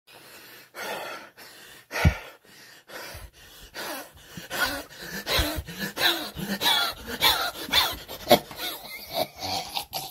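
A man laughing hysterically in choppy, wheezing bursts and gasping for breath. The laughing grows louder about four seconds in.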